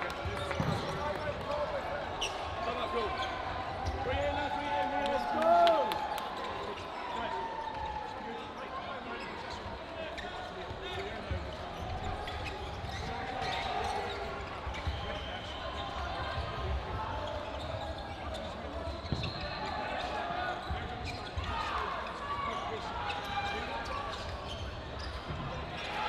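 Sports hall hubbub: many players' voices overlapping, with dodgeballs bouncing on the wooden floor now and then. About five seconds in, one louder call stands out.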